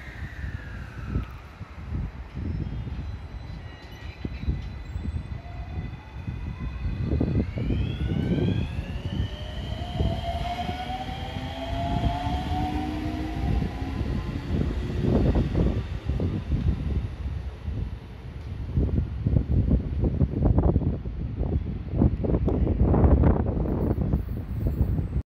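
JR West 225 series and 223 series electric multiple unit accelerating away from a platform. Its traction inverters and motors whine in several tones that climb in pitch and then fade. Over a low rumble, the wheels clack over rail joints, more often and louder near the end as the last cars pass.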